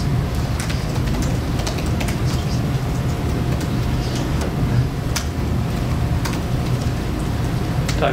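Scattered key clicks of a laptop keyboard being typed on, over a steady low hum.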